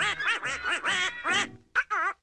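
Donald Duck's quacking cartoon voice, a rapid string of raspy syllables that breaks off about a second and a half in, followed by two short squawks near the end.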